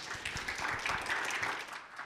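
Audience applauding, a crackle of many hands clapping that dies away near the end.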